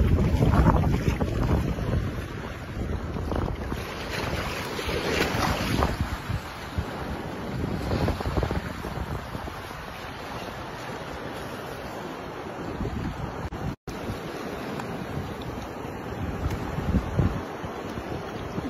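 Wind buffeting the phone's microphone over the wash of shallow sea water. It is loudest in the first few seconds, then steadier, and cuts out for an instant about three-quarters of the way through.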